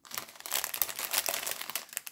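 Thin clear plastic bags of loose diamond-painting gems crinkling as they are handled, a dense run of small crackles that dies away near the end.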